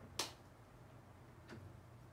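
Two sharp clicks, a loud one just after the start and a fainter one about a second and a half in, over a faint low steady hum.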